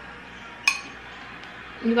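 A metal spoon clinks once against a glass bowl of pomegranate seeds, a short ringing chink.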